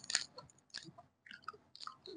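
Quiet, irregular chewing of pani puri: soft crunches and small mouth clicks.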